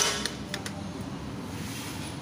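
A sharp click as the Yamaha XMAX 250's ignition switch is turned on, followed by a few fainter clicks under a steady low background noise.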